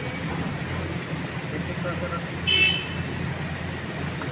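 Steady low hum of background noise, with one short high-pitched toot about two and a half seconds in that stands out as the loudest sound.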